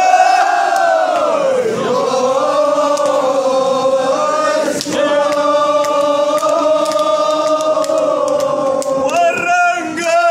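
A large crowd of men chanting together in unison, holding long notes that slide down and up in pitch.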